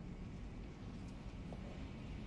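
Quiet, steady low rumble of background ambience, with a couple of faint ticks in the second half.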